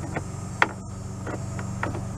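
A few small clicks as a 10 mm bolt is fitted by hand at the top of a car radio's mount in the dashboard, over a steady low hum. The clearest click comes a little over half a second in.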